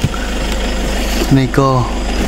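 Steady low drone of a vehicle engine running, with a short stretch of a man's speech near the end.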